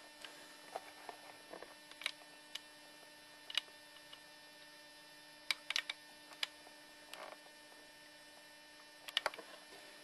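A steady, faint electrical hum with a scattering of short, faint clicks and ticks, a few coming in quick clusters about halfway through and near the end.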